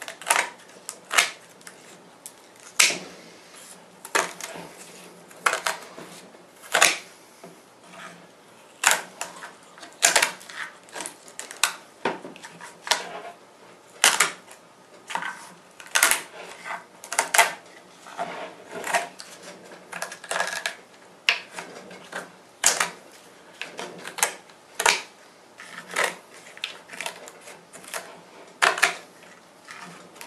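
Scissors snipping through fiberglass cloth around the edge of a set epoxy mould: a long string of sharp, crisp snips at an irregular pace, about one or two a second.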